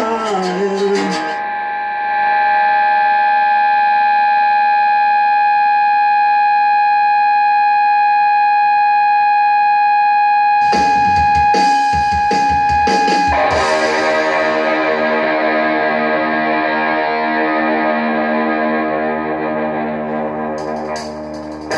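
Distorted electric guitar holding one steady high note for about twelve seconds, like amp feedback, with a few scratchy pick noises near the end of it; then a full chord is struck and left to ring, slowly dying away.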